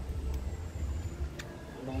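A low, uneven rumble, with a woman's voice starting near the end.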